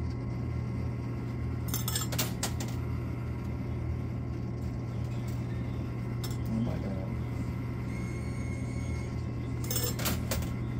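Quarters clinking as they are fed into and drop through a coin-pusher arcade machine, a cluster of clinks about two seconds in, a few single ones, and another cluster near the end, over a steady low hum.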